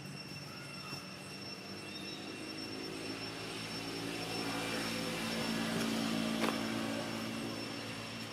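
A distant engine hum, a cluster of low steady tones, growing louder to its peak about six seconds in and then easing off as the engine passes by.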